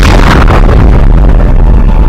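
Explosion of charges blowing up a giant Buddha statue in its cliff niche: a sudden, very loud blast, then a deep rumble that carries on as the rock collapses.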